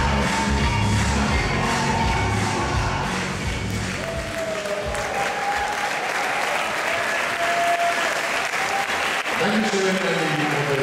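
Latin dance music with a heavy bass beat fades out about three seconds in, and audience applause takes over as the dance ends.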